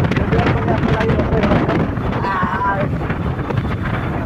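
Wind rushing over the microphone of a Suzuki scooter riding at about 55 km/h, with the scooter's engine and road noise underneath.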